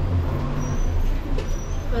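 Low, steady engine rumble of a large vehicle running outside, heard through the walls, a little louder in the first second.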